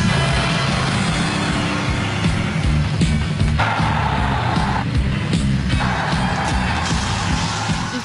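Action-film soundtrack: music over the noise of a moving double-decker bus, with a harsher noise coming in twice in the second half.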